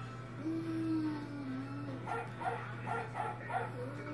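A person imitating a dog: a held howl-like "ooo" that falls slightly in pitch, then about five soft "woof"s in quick succession.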